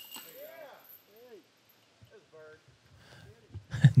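A disc golf putt strikes the metal basket chains at the very start, and the chains jingle briefly and fade. Then come faint whoops and cheers from fellow players.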